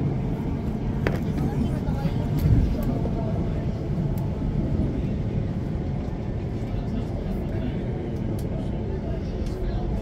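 Onboard a Class 455 third-rail electric multiple unit under way, a steady low rumble of wheels on rail and running gear, with a sharp click about a second in and a brief louder bump around two and a half seconds in.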